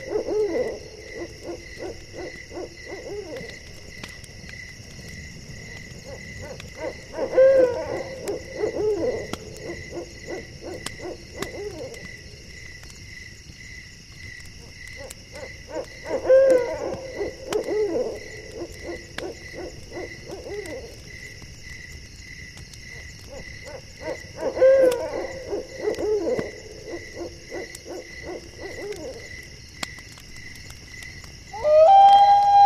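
An owl hooting in repeated series: runs of several hoots, each run lasting three to four seconds and coming back about every eight to nine seconds. Underneath runs a steady, evenly pulsed chirping of night insects.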